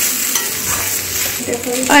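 Cooked rice being stirred with a metal spoon in a metal kadhai over a gas flame, the rice and oil sizzling steadily, with a few light scrapes of the spoon against the pan.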